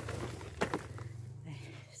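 Hands raking through loose, crumbly potting soil and dry roots in a plastic pot: a soft crackling rustle with a few sharp clicks, over a steady low hum.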